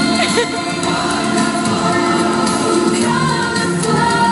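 Loud music with a choir of voices singing held notes.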